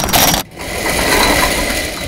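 A rusty chain rattling as it is pulled off a chain-link gate, then, about half a second in, the gate rolling along on its metal roller wheels with a steady metallic rolling noise.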